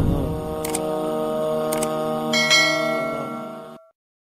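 Two sharp mouse-click sounds about a second apart, then a bright bell-like notification chime about two and a half seconds in, over sustained background music tones that fade out just before the end.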